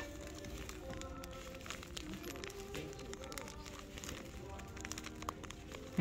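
Faint background music with held, shifting notes, with a few light crinkles and clicks of plastic packaging being handled.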